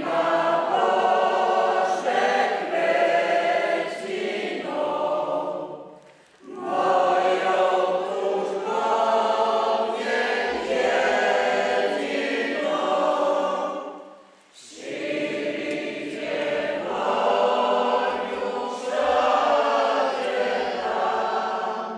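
A church congregation singing a hymn together. It is sung in long phrases, with brief pauses between lines about six seconds in and again near fourteen seconds.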